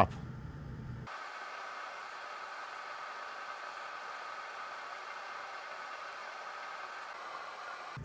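Steady, even hiss that starts abruptly about a second in, with no low end.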